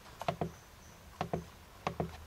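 Push-buttons on a Johnson Controls A419 electronic temperature controller clicking as they are pressed: a quick double click a fraction of a second in, another about a second in, and a single click near the end, as the set point is stepped up.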